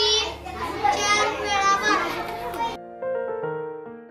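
Several children's voices at once for the first three seconds or so. Then only background music with steady plucked notes, fading out at the end.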